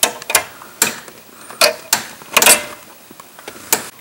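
Needle-nose pliers pulling the cut baling wires out of a freshly installed door-hinge spring: sharp metallic clicks and clinks, about half a dozen, irregularly spaced, with a small cluster about two and a half seconds in.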